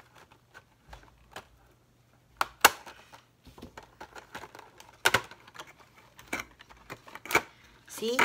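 A box of mechanical pencils being opened by hand: irregular clicks and snaps of the packaging with light rustling, the sharpest snaps about two and a half and five seconds in.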